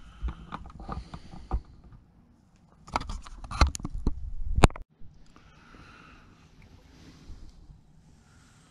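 Handling noise: scattered knocks, clicks and rustles, busiest just before they cut off suddenly about five seconds in, followed by a faint steady hiss.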